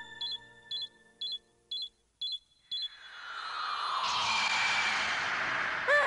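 Cartoon magic-spell sound effect: six short high beeping chimes about two a second, then a rush of noise that swells up over the last three seconds.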